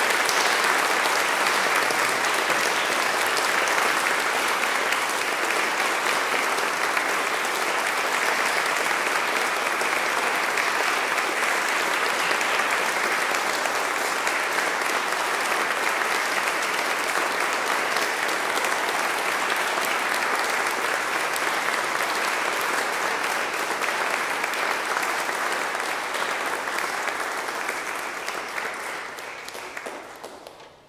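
Audience applauding steadily, the clapping thinning and fading away over the last few seconds.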